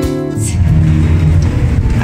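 Acoustic guitar background music fading out about half a second in, then a steady low rumble of a car heard from inside its cabin.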